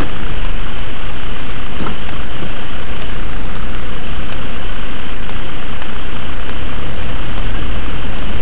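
Car engine and road noise heard inside the cabin, steady and loud, as the car creeps along in slow traffic.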